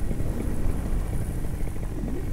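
Paramotor engine and propeller running at idle behind the pilot, a steady low drone, with wind noise over the helmet microphone.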